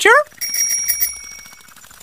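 A bell sound effect: a quick trill of metallic strikes that rings on and fades away over about a second.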